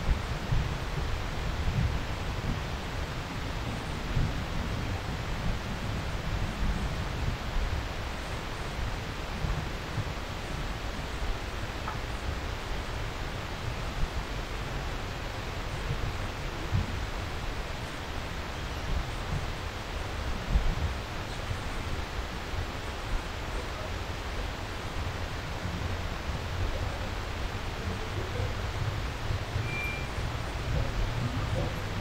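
Steady rushing noise with an uneven low rumble and a few soft thumps: wind and handling noise on the microphone of a camera carried at walking pace.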